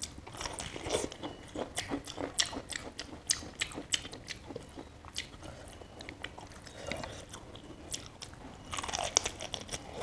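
A person biting and chewing boiled cabbage leaf with rice, a run of sharp crunching clicks that is thick for the first few seconds, thins out in the middle and picks up again near the end.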